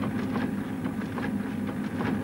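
A rotary duplicating machine running, its drum turning with a steady mechanical hum and light clicking as paper feeds through.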